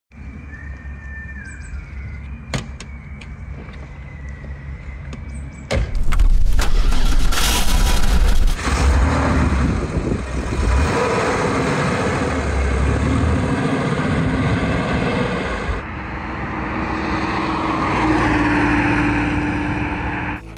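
Porsche 964 Targa's air-cooled flat-six running as the car drives, with wind and road noise. It is quieter at first and much louder from about six seconds in, its pitch rising a little near the end.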